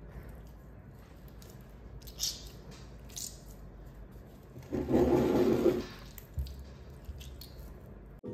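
Wet, watery clay being squeezed and kneaded between the fingers: soft sticky clicks, then one louder squelching burst of about a second a little past the middle.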